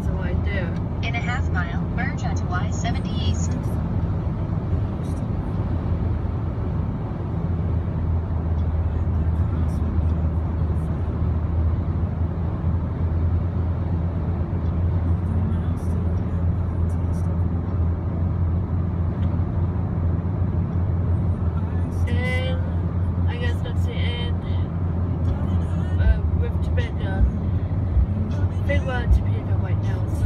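Steady road and engine noise inside a Jeep Compass cabin at highway speed. A voice is heard briefly near the start and again about two-thirds of the way through, and a few short thumps come near the end.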